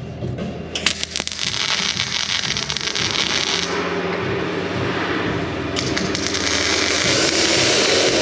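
MIG welder arc crackling as bolt heads are tack-welded to a steel plate, in two welds: one from about a second in to halfway, another from about six seconds in. A low steady hum runs underneath.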